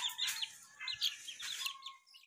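One-month-old gamefowl chicks peeping: quick runs of short, high, falling chirps, one run at the start and another about a second in.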